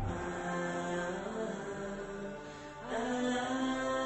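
Theme music of long held, chant-like notes that step from pitch to pitch, with a new sustained note coming in about three seconds in.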